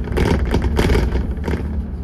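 Dennis Trident 2 double-decker bus (Alexander ALX400 body) heard from inside while driving: a steady low engine and road rumble. Over it, a quick cluster of knocks and rattles runs for the first second and a half.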